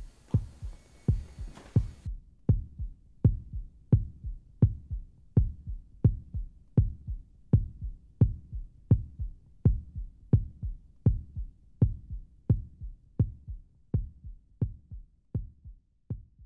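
Outro sound effect of slow, low thumps like a heartbeat, about one and a half a second, evenly spaced, fading near the end. A fuller sound cuts off about two seconds in.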